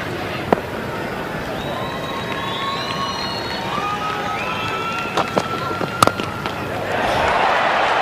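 Cricket-ground crowd noise with a sharp crack of bat on ball about half a second in, and a few more sharp knocks about five to six seconds in. Some high drawn-out tones rise and fall through the middle, and the crowd noise swells into cheering near the end.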